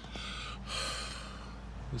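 A man's heavy breathing after a run: two breathy exhalations in the first second, over a steady low hum.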